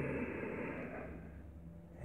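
A man's soft, audible breath that fades out gradually over about a second and a half.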